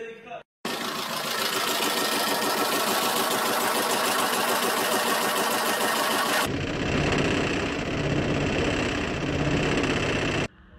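A running car engine with a loud, fast mechanical clatter. About six and a half seconds in, the sound changes to a deeper rumble with a steady low hum.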